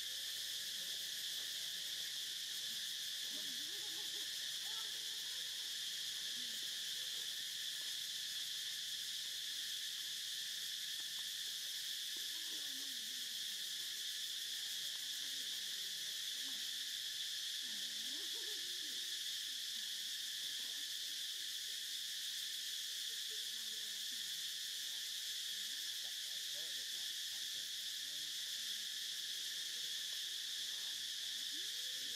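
A steady, unbroken high-pitched drone from a chorus of insects, with faint wavering low sounds now and then beneath it.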